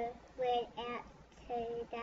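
A young child's voice making about four short, drawn-out hesitation sounds on a held pitch, with brief pauses between them.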